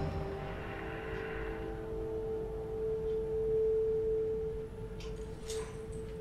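A single sustained low drone tone from the film's soundtrack, swelling in the middle and fading away near the end, with a few faint clicks.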